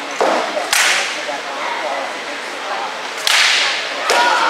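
Rattan weapon blows in armoured combat: two loud, sharp cracks about two and a half seconds apart, each ringing briefly in the hall, with a duller knock just before the first.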